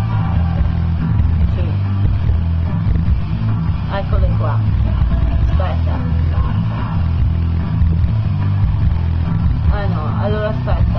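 Background music with a steady bass line, with indistinct voices over it a few times.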